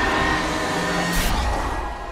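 Trailer soundtrack of music mixed with action sound effects: a loud, dense, sustained rumble with held tones, and a short hissing burst about a second in.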